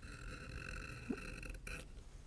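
A safety beveler's blade shaving the smooth grain side of veg-tan leather: one faint, steady scraping stroke that stops about a second and a half in.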